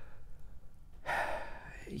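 A man's audible breath, a single noisy rush of air lasting just under a second that starts about a second in.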